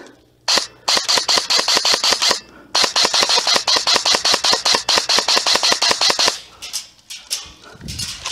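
Electric airsoft rifle (Amoeba AM-014 Honey Badger AEG) firing on full auto in two long bursts of rapid, evenly spaced shots. The first burst lasts about two seconds, and the second, after a short break, about three and a half seconds.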